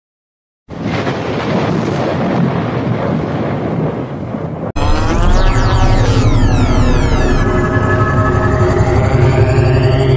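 After a brief silence, a dense rumbling noise runs for about four seconds. It cuts off abruptly and gives way to a louder electronic intro sting: falling sweeps over a steady bass hum, with a rising whine near the end.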